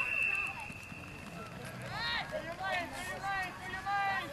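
A referee's whistle blown in one steady high note for nearly two seconds, followed by spectators shouting.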